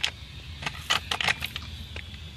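Irregular sharp plastic clicks and light rattles, about seven in two seconds, as a front-loading washer's plastic control board housing with its wiring is handled.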